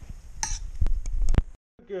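A spatula clinking and scraping against a stainless steel frying pan as shrimp are stirred in melted butter. There is a quick run of sharp clinks in the middle, which stops suddenly.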